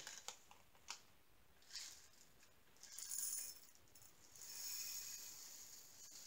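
Faint rattle of loose diamond-painting rhinestones shaken and shifted inside a small plastic bag, in a few short bursts with a couple of small clicks.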